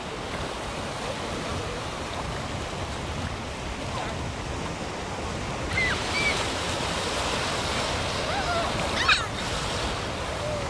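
Ocean surf washing steadily in the shallows, with a child's short high-pitched cries near the middle and a louder one about nine seconds in.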